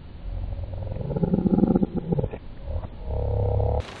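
A dubbed-in sound effect of a low animal growl, rough and rumbling, with a steadier held part near the end that cuts off suddenly.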